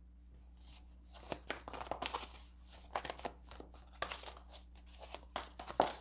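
A deck of oracle cards being shuffled and handled by hand: soft, irregular card flicks and rustles that start about a second in.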